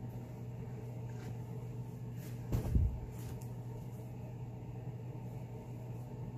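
Steady low hum of room tone, with one muffled thump and rustle about two and a half seconds in.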